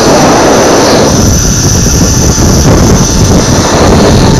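Zipline trolley running fast along the steel cable, a loud steady whirring rush mixed with heavy wind buffeting on the camera microphone.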